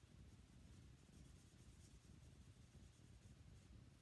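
Near silence, with the faint sound of an alcohol marker's tip stroking across cardstock as a small area is coloured in.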